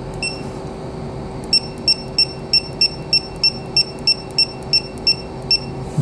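Creality CR-10 SE touchscreen beeping once for each tap on the plus button as the extrude length is stepped up: one short high beep, then a quick run of about fourteen identical beeps at roughly three a second. A steady low hum runs underneath.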